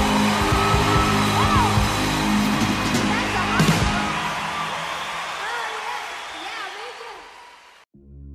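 Closing bars of a country gospel song: a voice singing over the band, fading out steadily from about halfway through and cutting to silence just before the end.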